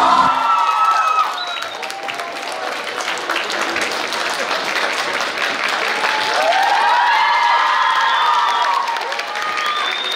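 An audience applauding after the dance, with cheering voices rising over the clapping near the start and again in the second half.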